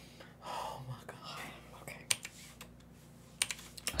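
Soft computer keyboard key clicks: one about halfway through and a quick cluster of clicks near the end, as keys are pressed to skip the playing video back. A soft breath and a quietly spoken 'okay' come in between.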